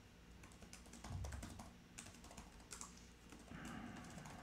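Faint computer keyboard typing: scattered key clicks, several a second, with a soft low thump about a second in.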